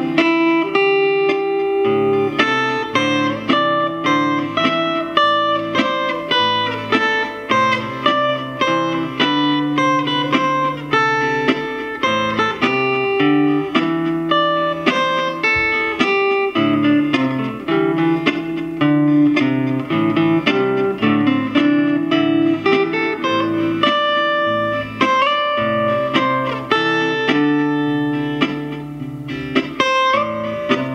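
Yamaha APX600 acoustic-electric guitar played through an amplifier as a looped part. A lower plucked line runs under single-note melody playing, continuous and steady in rhythm.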